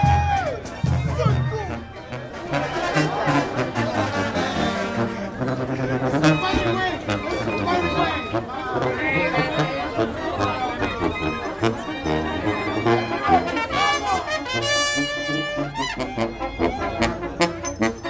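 Mexican street brass band (banda) playing as it marches: trumpets and trombones over low sousaphone notes, with the voices of the crowd walking alongside.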